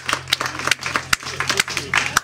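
Sparse applause from a small audience, individual claps heard separately and irregularly, over a steady low hum from the PA.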